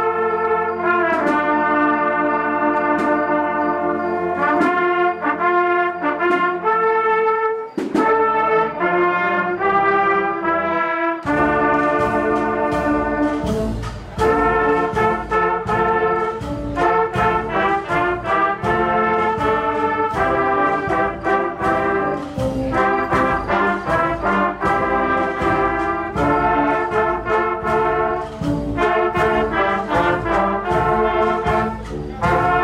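Spanish processional brass band (agrupación musical) playing a march: trumpets and trombones hold sustained chords, then drums and a low bass line come in about eleven seconds in with a steady beat under the brass melody.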